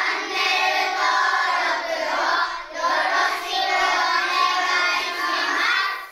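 A large group of children's voices calling out together in unison, in two long phrases with a short break about two and a half seconds in, cutting off suddenly near the end.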